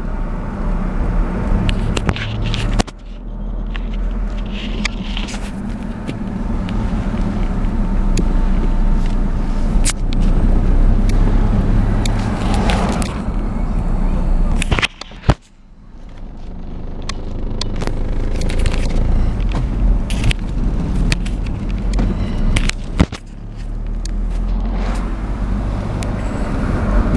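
Car engine and road noise heard from inside the cabin, moving slowly in traffic. A steady low hum is broken by scattered clicks and knocks, and the level dips briefly three times.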